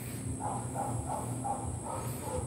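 Outdoor insect chorus: a steady high drone with a faint chirp repeating about three times a second, over a low hum.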